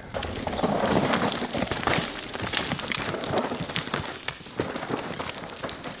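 Mountain bike descending a steep, rocky dirt trail: tyres crunching and sliding over loose dirt and stones, with a steady rush of gravel noise broken by many sharp clicks and knocks from the bike over rocks.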